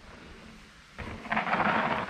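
Mountain bike tyres rolling and crunching over a loose dirt and rock trail, a rough gritty noise that starts abruptly about a second in.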